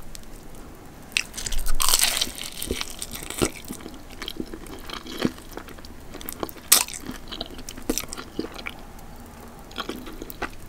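Close-miked biting and chewing of a sauced fried chicken drumstick's crispy coating. A louder crunch comes about two seconds in, followed by smaller crunches and sharp wet mouth clicks while chewing.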